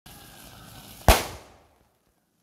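A single sharp explosion about a second in, the loudest sound here, dying away over about half a second after a steady hiss: a piece of sodium metal blowing up in water.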